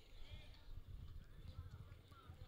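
A pair of bullocks running on a dirt track, their hooves making faint, irregular low thuds.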